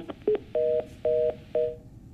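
Electronic telephone beeps: a short blip, then three steady two-tone beeps about half a second apart, as a phone line connects.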